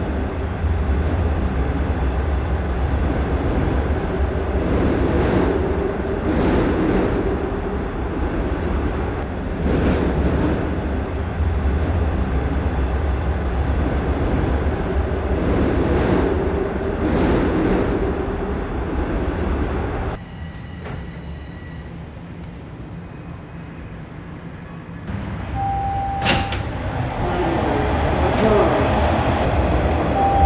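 Toronto subway train running, heard from inside the car: a steady low rumble with wheel-on-rail noise that swells and eases every few seconds. About two-thirds of the way through it drops suddenly to a quieter hum. It then builds again, with a short electronic tone and a sharp click near the end.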